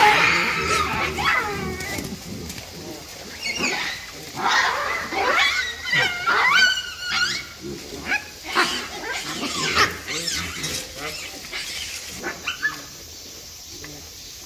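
Hamadryas baboons calling and screaming, a string of high calls that rise and fall in pitch, thickest in the middle and thinning out near the end.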